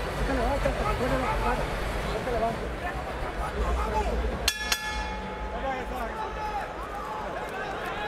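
Steady hubbub of a large arena crowd; about halfway through, a boxing ring bell is struck with a sharp clang that rings on for a couple of seconds, signalling the start of the round.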